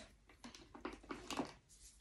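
Soft clicks and rustles of things being handled inside a leather tote bag, about half a dozen short faint sounds, as a small boxed item is lifted out.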